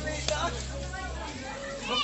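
Background chatter of several voices, children's among them, with a low steady hum that stops a little over a second in.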